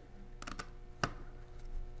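A few faint, light clicks as a small hand-made nut-driver tool works the tiny metal M.2 standoff stud out of a laptop's chassis; the clearest click comes about a second in.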